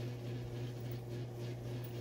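Quiet room tone: a steady low hum with faint hiss and no distinct events.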